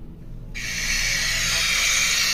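FM radio static from a Motorola keypad phone's loudspeaker: a steady hiss that switches on about half a second in. The phone's wireless FM, used without earphones, is picking up no station, only noise.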